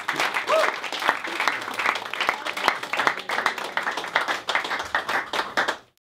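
Applause from a small audience at the end of a song, many hands clapping, with a short cheer from one listener about half a second in. The clapping fades out just before the end.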